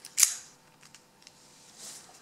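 A sharp click from a metal lock cylinder being handled as a paper follower is pushed into it, about a quarter-second in, followed by a few faint ticks and a soft rustle near the end.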